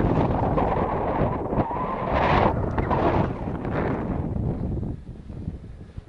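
Wind buffeting the microphone, a loud gusty rumble with no pitch to it that dies down about five seconds in.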